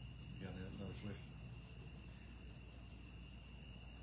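Quiet room background with a steady high-pitched tone, made of two thin unchanging pitches, under a low hum. A faint, brief murmur of a voice comes about half a second in.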